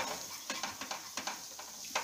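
A spatula stirring and scraping a thick coconut-and-mawa mixture around a nonstick pan as it cooks, in irregular strokes, with a faint sizzle underneath. The mixture is thickening on the heat.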